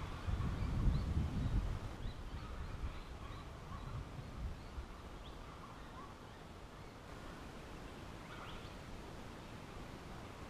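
Faint, scattered short bird chirps over quiet bushland ambience, with a low rumble in the first couple of seconds.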